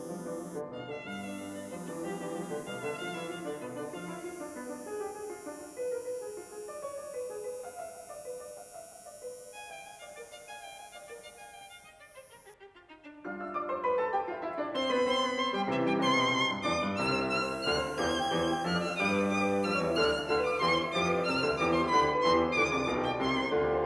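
Instrumental background music led by a violin. It thins out and grows quieter toward the middle, then swells back louder and fuller about thirteen seconds in.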